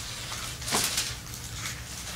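Paper pages of a Bible rustling as they are leafed through, with one louder rustle about three quarters of a second in, over a low steady hum.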